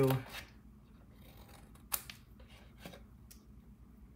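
Scissors snipping through cardstock: a few short, sharp cuts spaced out, as a small rectangle is cut away at a score line to form a box tab.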